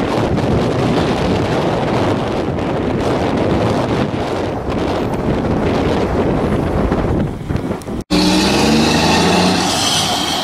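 Wind buffeting the camera microphone, a loud low rumble for about eight seconds. It cuts off suddenly and gives way to a steady low hum with a drone in it.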